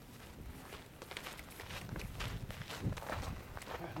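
Footsteps on dry, sandy dirt: several people walking at an uneven pace, over a low rumble.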